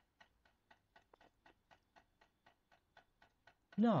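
Faint, even ticking like a clock, about four ticks a second.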